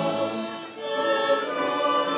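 Mixed church choir singing a Romanian hymn in sustained chords, accompanied by violins and flutes. The sound dips briefly between phrases about two-thirds of a second in, and the next phrase begins.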